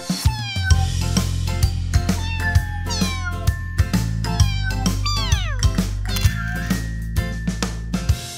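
Cartoon cat meows, several falling calls with the longest about five seconds in, over children's background music with a steady beat.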